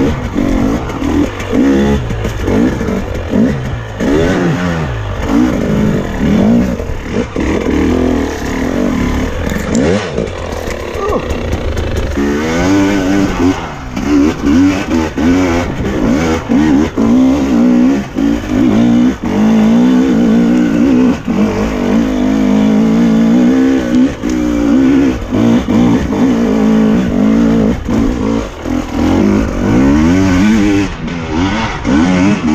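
Dirt bike engine under constant throttle changes, its pitch rising and falling again and again as it climbs a rough trail.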